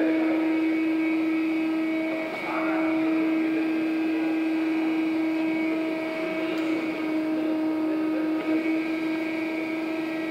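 Steady machine hum with one strong, unbroken tone and its overtones over a faint background rush, dipping briefly about two seconds in.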